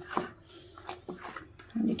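Hands kneading soft wheat-flour dough in a stainless-steel bowl: a few short, soft squishes and taps against the bowl.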